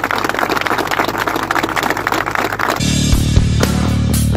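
A crowd clapping and applauding, cut off abruptly about three seconds in by loud closing music.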